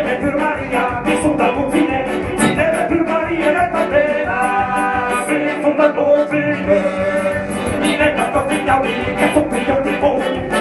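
Live folk band playing accordion, hurdy-gurdy and electric guitar together, with sustained melody notes over a steady beat.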